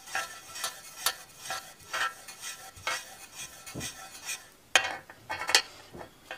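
Small plastic figure doll being handled and its soft plastic clip-on dress pulled off: light, irregular clicks and rubbing scrapes, with two sharper clicks near the end.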